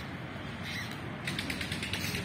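A fast, ratchet-like clicking starts just over a second in and keeps going, over a steady low rumble.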